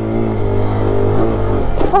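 Kawasaki Z125's small single-cylinder engine held at steady high revs for a wheelie attempt. After about a second and a half the note drops away.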